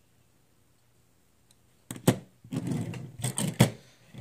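A small die-cast metal model car set down and handled on a tabletop: near silence, then a quick series of knocks and clicks about two seconds in, lasting a little over a second.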